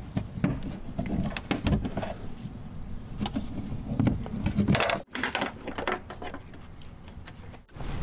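Handling noises from plastic wiring-harness connectors being unclipped and the harness worked out through the tailgate's access hole: scattered small clicks, knocks and rubbing.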